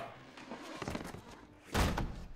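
Scuffling movement followed by one loud, heavy thud near the end.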